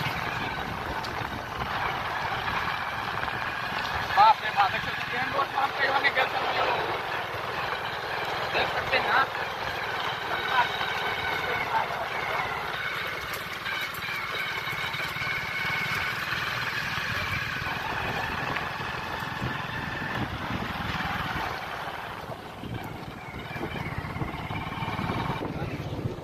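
Hero Glamour single-cylinder motorcycle engine running steadily while it is ridden, heard from the rider's seat along with voices at times.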